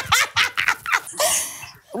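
Two women laughing hard in quick repeated bursts, then a breathy gasp.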